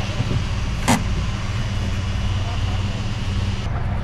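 Steady low hum of an idling car engine, heard from inside the car at the fuel pump, with one sharp click about a second in.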